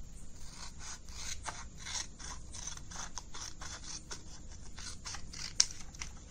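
Scissors cutting through a folded sheet of paper along its crease: a run of short snips and paper rustles, with one sharper snip near the end.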